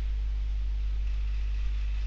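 Steady low electrical hum with faint hiss: the background noise of the recording.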